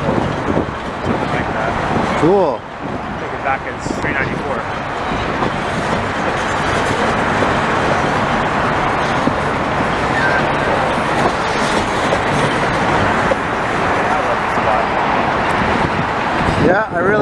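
Steady rolling noise of a long freight train of tank cars passing at low speed, blended with road traffic.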